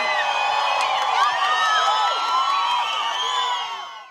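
Live concert audience cheering and whooping as a song ends, many voices shouting over one another, fading out near the end.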